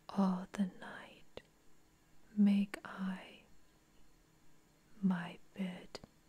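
Close-miked whispered speech: a short two-syllable phrase whispered three times, about two and a half seconds apart, with quiet pauses between.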